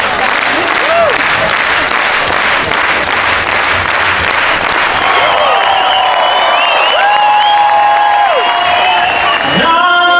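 Large theatre audience clapping steadily, then cheering and whooping over the applause from about halfway through, with one long held call rising above the crowd near the end.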